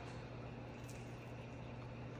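Quiet room tone: a steady low hum under faint, even background noise, with no distinct events.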